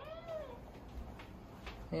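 A house cat meowing once, a short call that rises and then falls in pitch right at the start.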